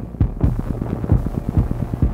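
Electromagnetic noise from an inductive pickup coil run over a laptop's keyboard: a rapid, throbbing train of low pulses over a steady hum, with hiss coming in about half a second in, used as an experimental electronic score layer.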